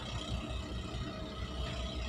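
Steady low drone of a ship's machinery, a rumble with a faint steady hum above it.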